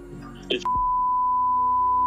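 A single steady high-pitched beep, lasting about a second and a half and starting just over half a second in: a censor bleep laid over a word.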